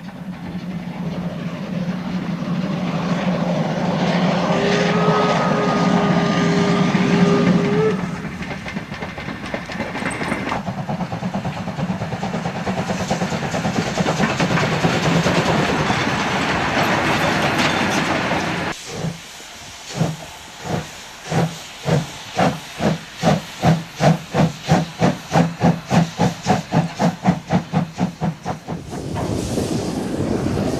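Steam locomotives. First comes loud steam hissing, with a steam whistle blowing for about four seconds. Then a locomotive's exhaust beats speed up from about one and a half to about three a second as it gets under way.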